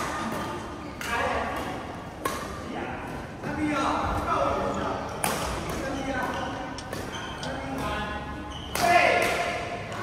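A badminton doubles rally echoing in a large hall: the sharp smack of rackets striking the shuttlecock every second or two, with players' voices between the shots.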